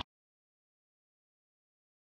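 Complete silence: the audio track is empty.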